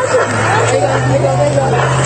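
A boat's motor hums steadily, low and even, under several overlapping voices calling out.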